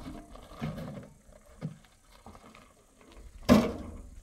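Empty metal wheelbarrow rattling and knocking as it is pulled back off a gravel pile, then a loud metal clunk near the end as it is set down on the ground.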